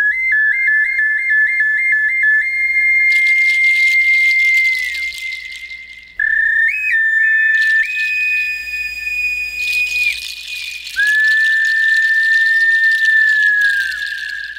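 A high, pure-toned whistle melody as a song intro. It opens with a warbling trill, then holds long notes with a short step up in pitch in the middle. An airy hiss rises behind it from about three seconds in.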